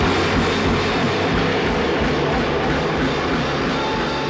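Hardcore punk band playing loud and dense: distorted electric guitar over drums.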